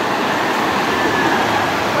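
Shallow mountain stream running over stones: a steady, even rushing of water.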